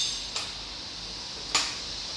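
Two small, sharp clicks about a second apart as a utility knife (cutter) is worked against the black outer jacket of RG58 coaxial cable to score it.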